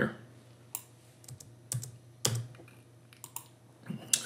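A handful of separate computer keyboard keystrokes with pauses between them, the loudest a little past two seconds in: code being deleted and edited.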